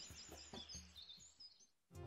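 Near silence, with faint high-pitched wavering chirps during the first second or so that then die away.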